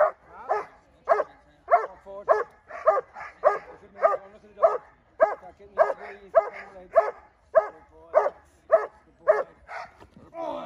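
A Dobermann barking hard and steadily at the helper in protection training, a little under two barks a second without a break.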